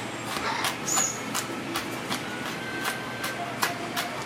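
Kitchen knife chopping red hot pepper on a plastic cutting board: a run of quick, uneven taps, about three or four a second.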